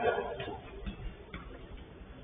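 A sharp knock right at the start that rings and dies away in the large covered pitch, then a few faint, scattered ticks, heard through a low-quality security-camera microphone.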